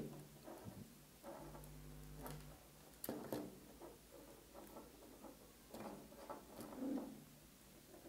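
Faint handling noises of wires and a plastic emergency stop button being worked by hand: scattered light clicks and rustles, the sharpest about three seconds in, with a brief low hum near the two-second mark.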